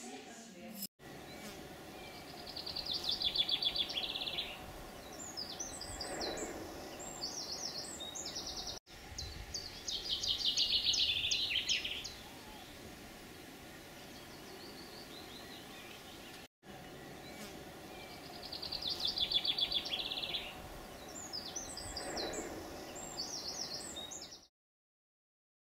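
Songbird singing outdoors: a fast rattling trill followed by a run of higher chirps. The same phrase comes round three times, each after a brief cut-out, over a steady background hum.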